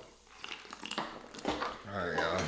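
A few light clicks and knocks of tableware at a meal table, the firmest about one and a half seconds in.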